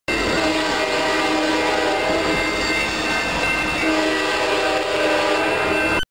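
Passenger train horn sounding one long, unbroken blast, a steady chord of several tones.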